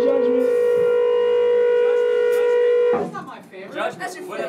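Electric guitar amplifier feedback: one loud, steady whining tone with overtones, held unchanged until about three seconds in, then cut off suddenly. People talking follow it.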